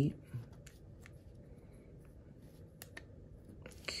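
A few scattered faint clicks and light handling noises from a plastic Transformers Deluxe Crashbar action figure, its leg and foot joints being moved by hand during transformation.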